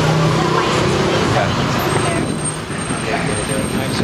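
A motor vehicle's engine running with traffic noise, a steady low hum that eases off about halfway through, with indistinct voices.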